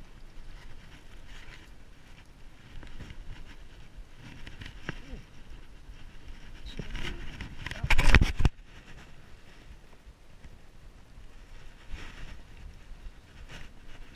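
Handling noise as a landed striped bass is picked up and carried: rustling and scuffing of clothing and hands, with one loud rush of noise lasting under a second about eight seconds in as the fish is lifted.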